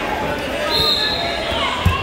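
Wrestlers grappling on a gym mat amid background crowd chatter, with high squeaks and one sharp thud shortly before the end.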